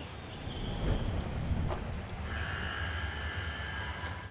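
Sound effect for an animated segment title card: a steady low rumble with a noisy clatter over it, and thin high tones joining during the second half.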